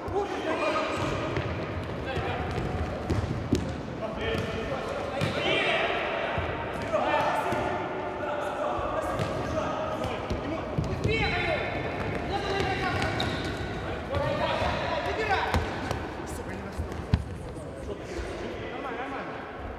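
Futsal ball being kicked and bouncing on the hard court floor, with short knocks throughout, while players shout calls to one another in a large sports hall.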